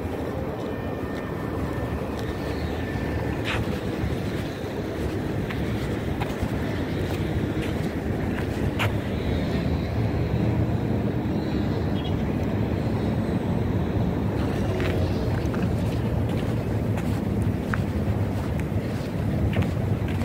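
Wind buffeting the microphone: a steady, uneven low rumble that grows a little stronger after the first few seconds, with a few faint scattered clicks.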